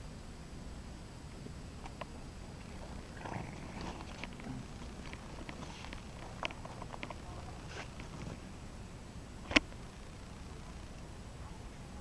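Handling noise: a scatter of small clicks and knocks over a low, steady rumble, with one sharp click about nine and a half seconds in.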